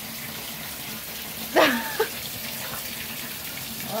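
Steady hiss of a thin jet of water spraying from a hose rigged to a sink tap and splashing down. About one and a half seconds in comes a short, loud vocal cry.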